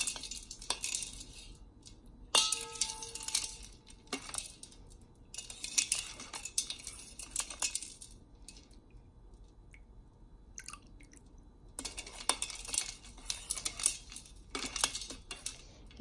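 Metal spoon stirring a drink in a metal basin, clinking and scraping against the sides in several bouts, with one ringing clink about two and a half seconds in and a quieter pause in the middle.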